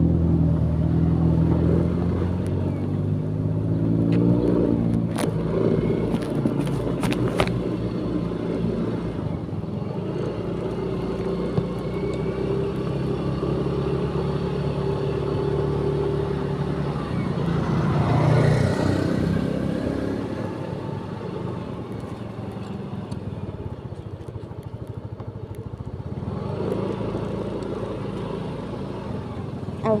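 A road vehicle's engine running while under way, its pitch rising and falling with changes of speed over the first few seconds. A few sharp clicks come around six to seven seconds in, and a passing vehicle swells and fades about eighteen seconds in.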